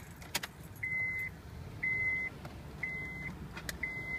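Smart Start ignition interlock breathalyzer beeping as it initializes, before it will accept a breath sample. It gives one short, high, steady beep about once a second, each about half a second long, with a light click of the handset being handled.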